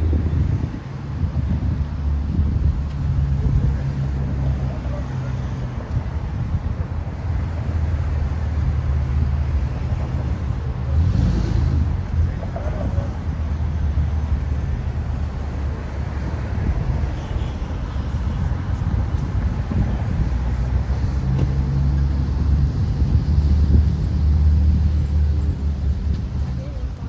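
Steady low rumble of street traffic passing by, mixed with wind buffeting the microphone.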